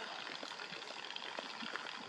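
Quiet, steady outdoor background noise, a faint even hiss with no distinct events.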